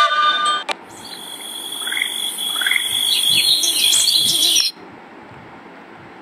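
Cartoon sound effect of bird calls at night: a few short rising chirps over a high steady hiss and whine, cutting off suddenly near the end. It follows a brief last held note of music.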